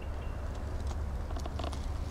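Low rumble on the microphone of a handheld camera moving through the woods, with a few light crunching crackles of dry leaves underfoot.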